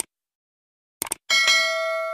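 Subscribe-button animation sound effects: a short click at the start and a quick double click just after a second in, then a bell ding that rings on with several steady tones and slowly fades.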